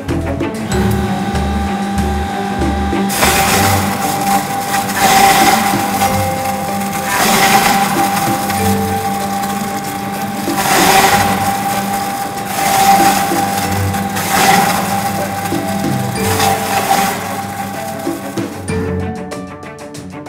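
Electric grinding machine with a stainless-steel hopper running as aloe vera gel is fed through it, with repeated surges of grinding noise. The motor starts about a second in and stops near the end.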